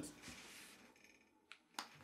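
Faint scratching of a marker pen writing digits on paper, followed by two short clicks near the end.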